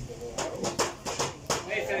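Voices of people talking and calling out in a busy market, with a quick run of sharp knocks or taps about half a second in that lasts about a second.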